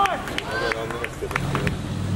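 People calling out in raised voices across a ball field, with a few sharp claps. A low steady hum comes in about a second and a half in.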